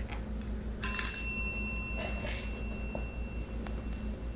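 Chrome desk bell (service bell) struck twice in quick succession by a cat's paw about a second in, its bright ring fading over the next few seconds. The ring is the trained cat's signal asking for a snack.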